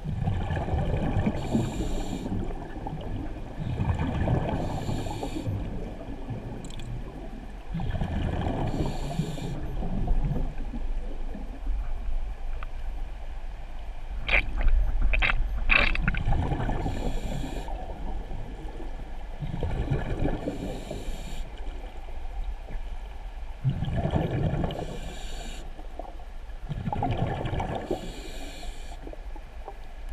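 A scuba diver breathing through a regulator underwater, about every four seconds: an inhale hiss, then a rumbling burst of exhaled bubbles. A few sharp clicks come a little past halfway.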